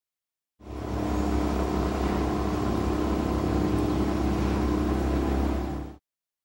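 A steady low rumble with a faint hum through it, coming in about half a second in and cutting off suddenly near the end.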